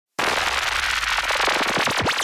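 Dense, steady crackling, a fast patter of tiny clicks and pops, starting abruptly just after the beginning.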